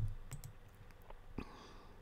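A handful of faint, sharp clicks from a computer mouse and keyboard, one a little louder about one and a half seconds in.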